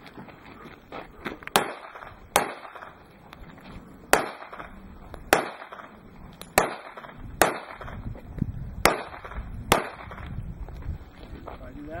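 A handgun fired one shot at a time, about eight sharp cracks spaced roughly a second apart, each with a short echo.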